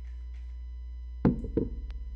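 Two dull knocks about a third of a second apart, a little over a second in, followed by a faint click, over a steady low electrical hum.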